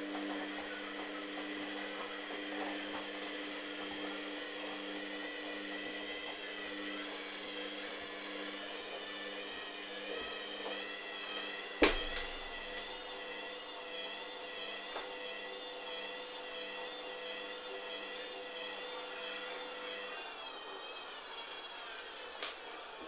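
Hoover DYN 8144 D washing machine drum spinning: a steady motor whine with a slightly wavering pitch over a lower hum. There is one sharp click about halfway through, and the lower hum stops shortly before the end.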